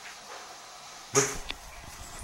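Camera handling noise: a sudden loud rustling thump about a second in as the camera is swung, followed by a sharp click.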